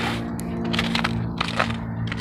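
Footsteps crunching through wet, trampled snow and slush, about two steps a second, over a steady low hum.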